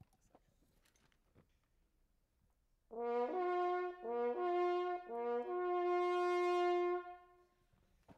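French horn playing a simple signal-style call, about three seconds in: three quick upward leaps from a lower note to a higher one, the last high note held long before it dies away.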